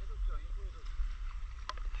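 Water splashing and lapping around a stand-up paddleboard, over a low rumble of wind on the microphone, with a single sharp click near the end.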